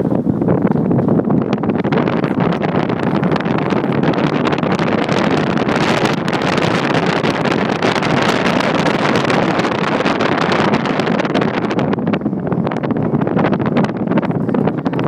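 Steady wind and road noise from a moving car, the wind buffeting the microphone.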